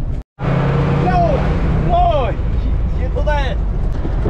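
Steady engine and road rumble inside a moving vehicle's cabin, with a few short voiced calls rising and falling over it about one, two and three seconds in. A brief dropout comes at a cut just after the start.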